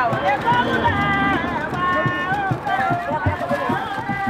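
Several people talking and calling out at once, close by, their voices overlapping, with a few long drawn-out called notes in the middle.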